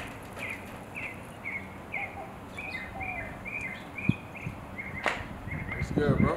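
A small bird chirping over and over, short notes about two a second, with a couple of sharp clicks.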